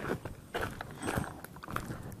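Footsteps on rocky ground with dry grass and brush rustling and crackling against legs and the camera, a few irregular soft crunches and snaps.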